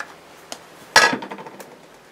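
A sharp knock of hard plastic about a second in, with a small tap before it: a plastic ink pad being dabbed onto a clear stamp on the stamper's acrylic plate.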